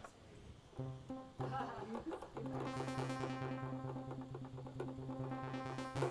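Sawtooth-wave synth notes played from a MIDI keyboard through a low-pass filter: two short low notes, then a long held low note about two and a half seconds in. As the filter cutoff is swept by a MIDI knob, the held tone brightens and then darkens again.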